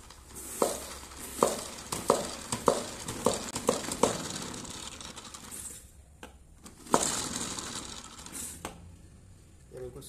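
A Cello Kleeno spin mop being wrung in its bucket's spin basket by pumping the stainless steel handle rod. A run of sharp clicks comes quicker and quicker over about three seconds, with a high hiss of water. One louder click follows near the end.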